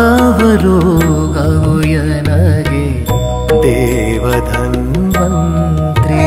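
Kannada devotional song (Dasarapada) in a Carnatic style: an ornamented melody that bends and wavers, with tabla, sarangi and keyboard accompaniment over a steady low drone.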